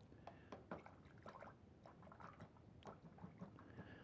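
Faint, scattered soft ticks and wet dabs of a paintbrush picking up and laying on water-soluble oil paint, over near-silent room tone.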